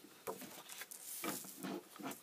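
A sheet of paper being laid on a desk and smoothed by hand, with light handling knocks from small plastic parts: a string of soft rustles and taps, with a brief papery hiss about a second in.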